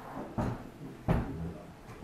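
Two dull knocks, a little under a second apart, the second one louder.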